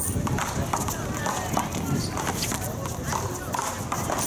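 Indistinct talk from people around an outdoor court, with scattered short, sharp knocks.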